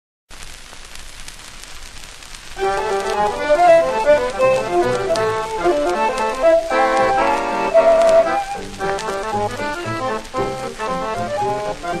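Surface hiss and crackle of a shellac 78 rpm record for about two and a half seconds, then a swing jazz quartet comes in: accordion, violin, guitar and string bass.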